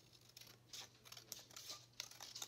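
Scissors making a few faint, short snips through a folded strip of paper.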